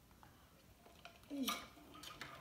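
Faint table sounds, then about one and a half seconds in a short mouth noise from someone eating: a brief voice-like sound dropping in pitch, ending in a sharp click.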